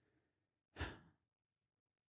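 Near silence with a single short breath, a quick sigh, a little under a second in.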